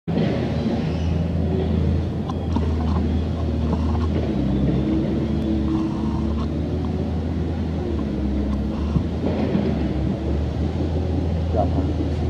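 A steady low rumble with faint voices.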